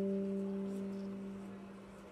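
A single low note from an amplified instrument, held and ringing steadily, fading away until it has almost died out near the end.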